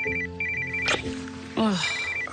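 Mobile phone ringtone: a rapid trilling electronic ring repeating in short bursts, over soft background music.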